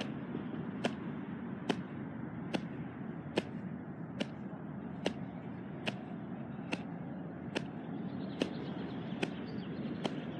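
A steady beat of sharp taps, about one every 0.85 seconds, one for each jumping jack, over a steady background hiss.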